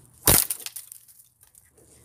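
A dry wooden stick snapping and splintering in one sharp crack as it is struck, followed by a few faint clicks.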